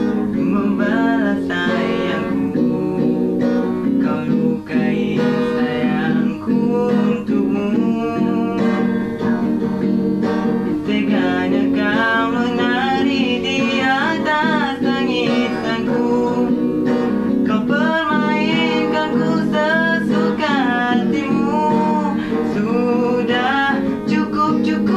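An acoustic guitar strummed in steady chords, accompanying a young man singing the melody.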